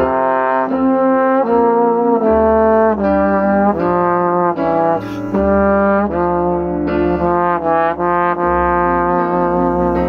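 Yamaha YSL882 tenor trombone playing a melody of smoothly joined notes, about two a second.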